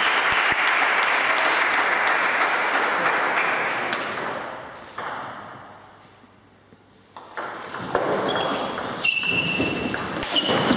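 A steady wash of noise fades out by about six seconds in. Then a celluloid table tennis ball clicks sharply off bats and table in a doubles rally, with short ringing pings near the end.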